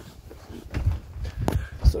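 Handling noise from a phone being moved and swung around: a few low thumps and knocks, with a sharp click about one and a half seconds in.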